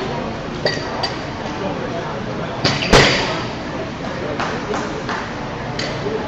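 Loaders sliding bumper plates onto the steel sleeves of a barbell: several sharp metal clinks, the loudest clank with a brief ring about three seconds in, over background chatter.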